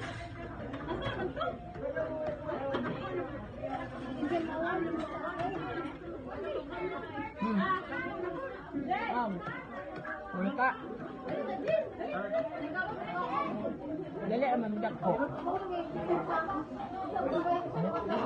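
Several people talking at once: overlapping conversational chatter.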